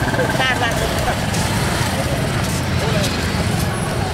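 Many people talking at once while walking in a street procession, over steady road traffic noise.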